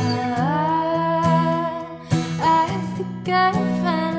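A woman singing with strummed acoustic guitar: one long held note for about two seconds, then a run of shorter notes over the chords.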